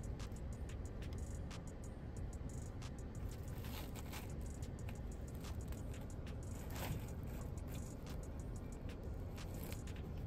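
Paper and foil sandwich wrapper crinkling as it is handled, in many short irregular crackles over a steady low rumble.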